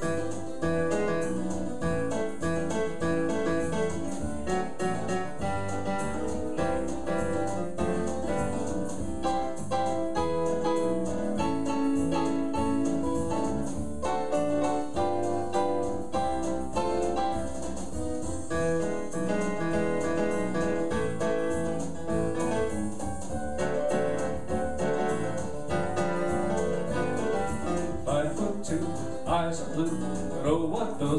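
Electronic keyboard playing an instrumental song with a steady beat, played live over a computer-produced backing track.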